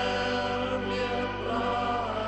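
Congregation singing a slow hymn together, moving in long held notes with short glides between them.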